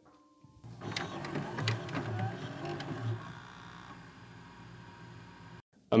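A short musical transition sting made of clicks and low pulses over faint tones. It fades over its second half and cuts off just before the end.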